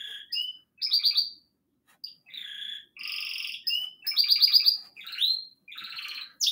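A pet bird chirping and singing in a string of short high calls, some run together as quick trills, with brief pauses between them.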